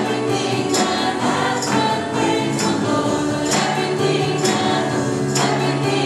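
Live worship band and group of singers performing an upbeat praise song: several voices singing together over piano, guitar and keyboard, with a sharp high accent on the beat about once a second.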